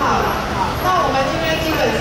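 Indistinct voices of people talking over a steady low rumble of street traffic.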